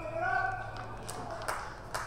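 Footballers shouting calls on the field during a contest for the ball, the voices dying out about half a second in, followed by three short sharp knocks about half a second apart.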